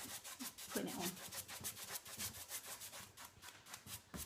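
A nearly dry paintbrush worked rapidly back and forth over a pine cabinet, its bristles scratching on the wood in quick, rhythmic strokes, several a second. This is dry brushing, with the paint being pushed into the grain.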